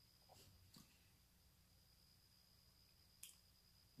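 Near silence: room tone with a faint steady high whine and three faint ticks.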